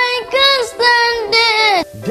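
A high child's voice singing a short phrase of held, sliding notes, breaking off just before the end.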